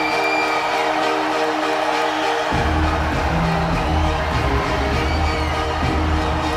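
Metal band playing live: held, sustained chords, then a heavy low end of bass and drums comes in suddenly about two and a half seconds in and carries on.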